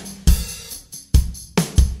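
Recorded acoustic drum kit loop playing a steady groove: kick and snare hits with hi-hat, and a cymbal wash shortly after the start. It is the wet mix, with a lot more reverb for a bigger drum sound.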